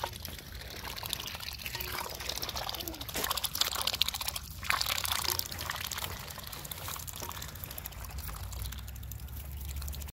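Ducks dabbling in a metal bowl of watery greens: quick wet slurping, splashing and bill clicks, busiest a few seconds in.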